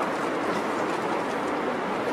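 Steady outdoor city-street background noise, an even hiss and rumble of the street.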